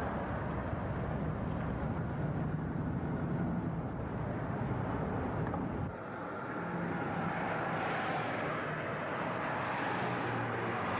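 Steady road traffic from cars driving past, with an abrupt change in the sound about six seconds in, where the scene cuts to a highway.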